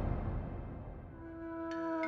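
Dramatic trailer music: a deep low rumble fades out, then soft sustained notes come in about a second in, with short higher notes joining near the end.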